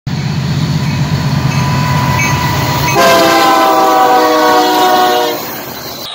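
Union Pacific diesel freight locomotives passing with a low engine rumble. About halfway through, the horn sounds a chord of several notes, held for about two and a half seconds.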